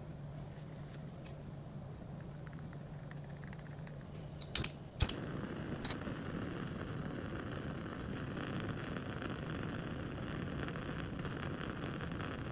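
A few sharp clicks and knocks about five seconds in, then the steady hiss of a small gas burner's flame.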